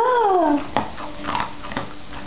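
A high-pitched drawn-out word of praise at the start, then a few light knocks and rustles as a dog grabs and shakes a fleece tug toy on a cord over a wooden floor.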